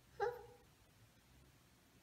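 A young child's single short, high-pitched vocal sound about a quarter second in, like a brief wordless "mm", followed by faint room noise.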